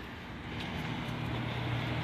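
Steady low hum of a car engine idling, over faint outdoor background noise.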